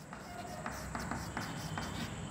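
Chalk writing on a blackboard: a string of short, quiet scratches and taps as a word is written.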